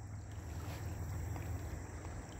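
Faint outdoor background in woods: a steady low rumble with a soft hiss over it and no distinct events.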